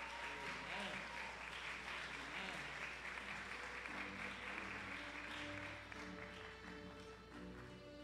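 Audience applauding, the clapping fading away over several seconds, over soft instrumental background music with held notes that comes to the fore as the applause dies down.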